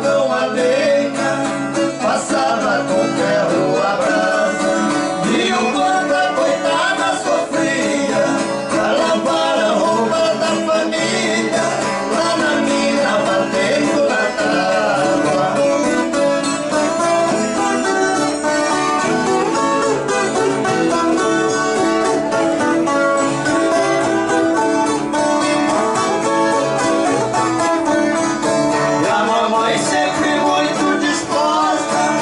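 Caipira duo performing a moda de viola: viola caipira and acoustic guitar strummed together, with two male voices singing over them in parts.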